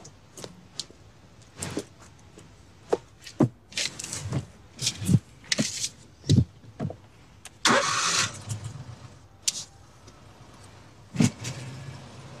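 Knocks and clunks of a person climbing into a John Deere Gator utility vehicle and settling at the wheel, with a short rush of noise about eight seconds in. Near the end the vehicle starts and runs with a low steady hum.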